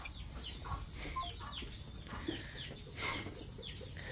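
Faint bird chirping around a farm barn: short falling chirps, two or three a second, over a low steady hum.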